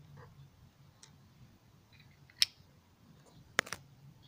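Small metal watch cases clicking as they are handled and set down on a stone floor: one sharp click about halfway through and a quick double click near the end, over a faint low hum.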